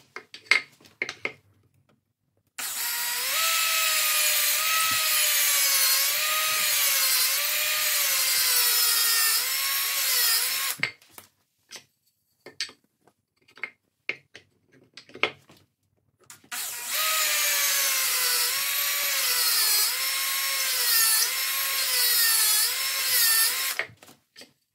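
Makita cordless drill boring into the end grain of a wooden dowel. There are two runs of about eight seconds each, the motor's pitch wavering up and down as it loads in the wood. Short wooden knocks and clicks come before and between the runs.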